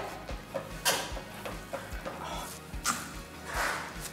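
A spoon scraping and scooping strands of cooked spaghetti squash out of its shell, a few soft clicks and a short scrape near the end, over quiet background music.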